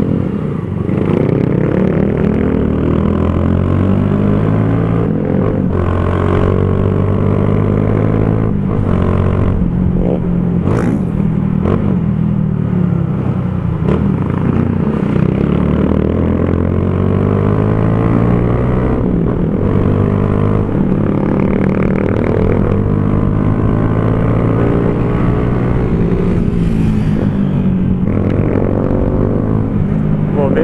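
Single-cylinder four-stroke engine of a 2012 Honda CG Fan 150 with an aftermarket Torbal Racing exhaust, heard from on the bike while riding. Its pitch climbs under throttle and drops again through repeated gear changes, with a few short knocks along the way.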